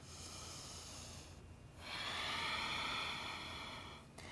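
A woman's audible breathing held in a yoga pose: two long breaths, one at the start and the next about two seconds in.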